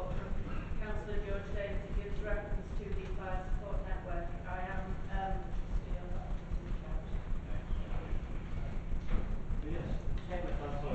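A person speaking in a meeting, the words unclear, over a steady low crackling rumble in the recording.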